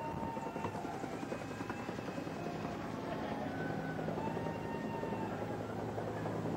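Steady rumbling noise with a low hum, with several short whistled tones at different pitches over it, each about a second long.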